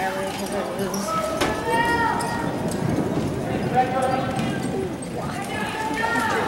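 Polo ponies' hooves on the soft dirt footing of an indoor arena as several horses move in a bunch. Voices call out several times over the hoofbeats, without clear words.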